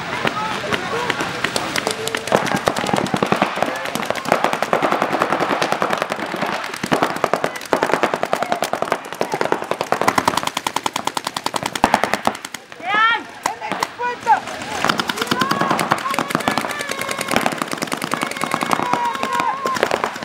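Several paintball markers firing rapid strings of shots, many shots a second, almost without a break, with players shouting over them about two-thirds of the way through and near the end.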